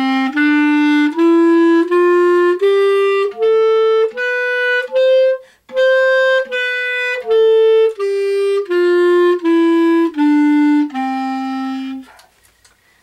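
Solo clarinet playing a one-octave D major scale, stepping up note by note, holding the top note, then stepping back down to the starting note. Each note is tongued separately, with a short break between notes.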